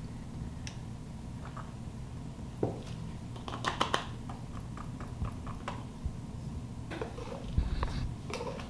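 Scattered light clicks and knocks of a slotted spatula in a stainless steel bowl and a plastic canning funnel against a glass mason jar as cooked ground beef is spooned into the jar, with a quick cluster of clicks about halfway through. A steady low hum runs underneath.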